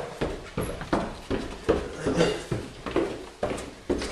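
Footsteps of two people walking down a flight of stairs, a quick run of knocks at about three to four steps a second.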